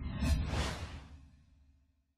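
Whoosh sound effect over a low rumble. It swells to a peak about half a second in, then fades away over the next second.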